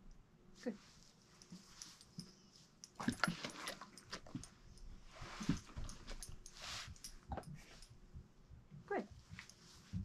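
Young Doberman pinscher up at a person's hands for a reward, making a run of soft snuffling, mouthing and clicking noises for about five seconds from about three seconds in.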